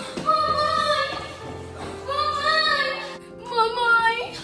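A girl's voice in three long, drawn-out wailing calls over soft sustained background music.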